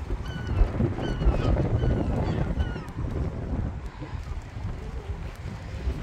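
Wind buffeting the microphone in gusts, heaviest in the first three seconds and easing after. A few short, high bird calls sound through it in the first half.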